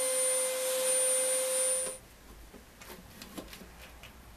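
Router table running at speed, a steady high whine over a hiss, as the bit cuts away part of a wooden banjo neck. It cuts off abruptly about two seconds in, leaving only a few faint knocks.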